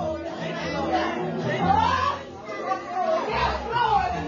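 People talking over background music in a large hall.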